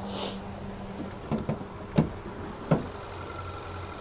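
Hood of a 2014 Kia Soul being opened: a short rustle, then several sharp clicks and knocks from the latch, hood and prop rod. A low steady hum from the idling engine runs underneath and grows louder near the end.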